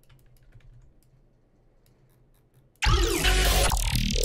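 Faint, sparse clicks of a computer keyboard and mouse over a low hum. About three-quarters of the way in, loud dubstep playback cuts in abruptly: the track being built from the sample pack, with gliding, wobbling bass tones.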